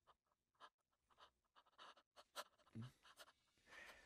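Near silence with faint, scattered ticks and rustles that grow a little busier after the first second.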